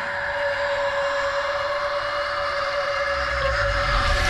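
A steady, whistle-like held tone over an even hiss, with a low rumble building in the last second.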